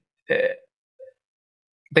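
A man's short hesitation sound "uh", then dead silence, with speech starting again near the end.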